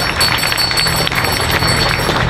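Scattered clapping from a crowd after a speech, over a steady low hum.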